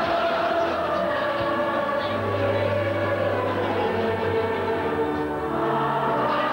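A congregation and choir singing a hymn, holding long notes over a steady low accompaniment.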